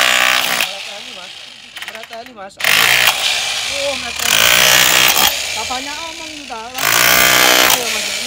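A 900-watt APR AP35 rotary hammer drill in chipping mode, its SDS Plus pointed chisel hammering into a hard concrete paving block in three loud bursts: one at the start, a longer one from about two and a half seconds to five seconds in, and a short one near the end. The chisel breaks off chips of the block with each burst.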